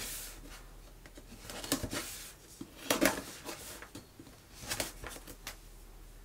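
A knife cutting the sticker seals on a cardboard box, with scraping and rustling as the box is turned and handled, in a few short spells.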